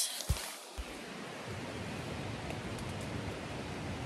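Steady hiss of static from a faulty recording, with the normal sound lost. A brief low thump comes just after the start, and the hiss settles to an even level about a second in.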